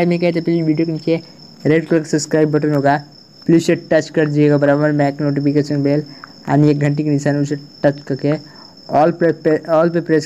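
A man speaking Hindi in phrases with short pauses, over a steady high-pitched tone that runs behind the voice throughout.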